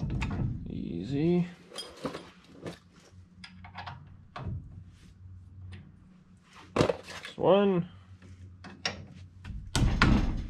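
Metal parts clinking and knocking as a single-piston brake caliper is worked onto its bracket and slide pins by hand, in irregular taps and clicks. Two brief pitched sounds that rise and then fall in pitch stand out, about a second in and again near eight seconds.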